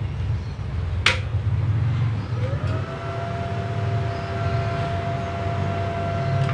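Steady low electrical hum of a switched-on arc welding machine waiting for the arc to be struck, with one sharp click about a second in. From about two and a half seconds a siren-like tone rises and then holds steady over the hum.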